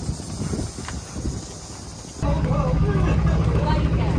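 Footsteps on a stone walkway with faint voices, then an abrupt cut about two seconds in to a louder steady low engine hum from idling tour boats with people talking nearby.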